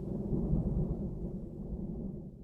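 A low, rough rumble left behind after the music stops, fading out at the very end.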